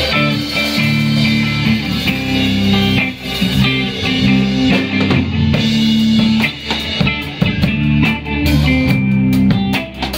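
A live rock band playing an instrumental passage on electric guitar, bass guitar and drum kit. The drum hits come through more plainly in the second half.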